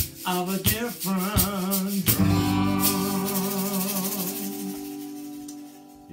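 A man singing with vibrato over a strummed acoustic guitar. About two seconds in he strums a final chord and holds a long last note, and the chord rings on and fades away over the next few seconds.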